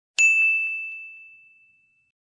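A single bell-like ding, an edited-in sound effect: one clear ringing tone that fades away over about a second and a half.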